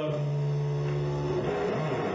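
Electric guitar played through an amplifier on a live club stage, low notes held and ringing steadily, then changing about a second and a half in.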